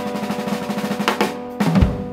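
Jazz drum kit played with sticks: a fast, even snare drum roll, then two sharp hits about a second in and a loud pair of accents with the bass drum near the end. Under it a held brass chord from the band slowly dies away, the closing bars of the tune.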